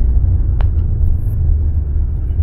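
Low, steady rumble of a car driving, heard from inside the cabin, with one faint click about half a second in.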